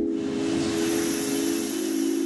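Ambient background music holding a sustained low chord, with a hissing swell layered over it: a transition sound effect whose high hiss comes in under a second in and holds.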